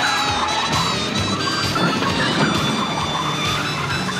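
Police car siren wailing up and down over driving backing music.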